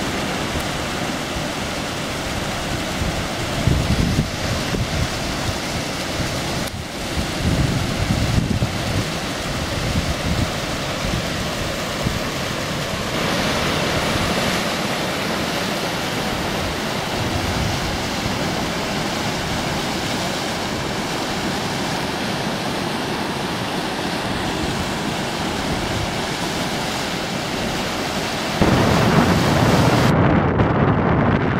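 Wind buffeting the microphone in gusts over a steady rushing noise of a shallow river running over rocks and rapids; a strong gust near the end.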